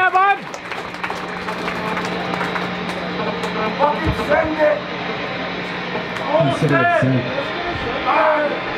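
Indistinct talking from people in the room, a few short phrases, over a steady low electric hum from the band's amplifiers that stops about six seconds in.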